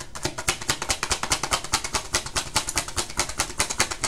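A deck of tarot cards being shuffled: a quick, steady patter of card-edge clicks, about eight to ten a second.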